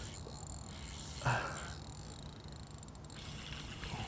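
Fishing reel being wound as a hooked largemouth bass is played, faint over a steady low hum, with a short louder sound about a second in.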